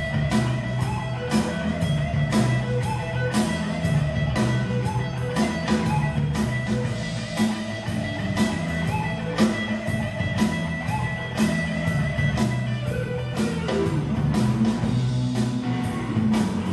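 Live blues band playing an instrumental passage: electric guitar over bass with a steady drum beat.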